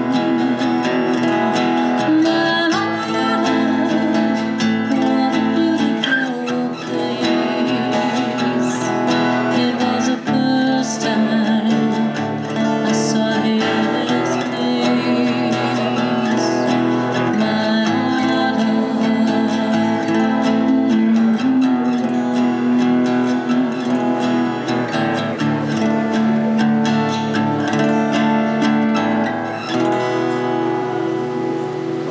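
Steel-string acoustic guitar strummed steadily, with a woman singing along at times.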